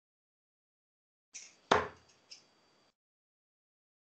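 Three sharp knocks through a video call's audio, the middle one much the loudest, with a short tail after it.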